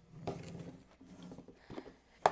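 Faint handling of plastic food containers of dry rice on a wooden tabletop: soft rustling and shifting, with a light tap near the end.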